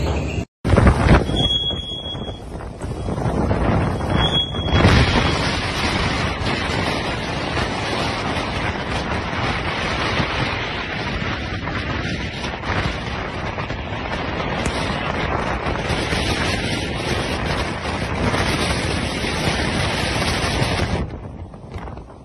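Strong wind buffeting the microphone in a continuous loud rush over choppy water, fading near the end. Two brief high squeaks come in the first few seconds.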